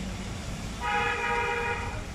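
A horn sounds once, starting about a second in and holding steady for about a second as a chord of several tones, over a steady background hiss.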